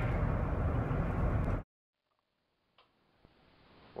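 Steady road and engine noise heard from inside a moving car at highway speed, which cuts off suddenly about a second and a half in, leaving near silence with one faint click.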